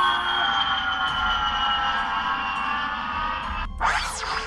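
A held electronic chord of several steady tones, drifting slowly lower in pitch and fading toward the end. It is broken off near the end by a short burst of static-like noise.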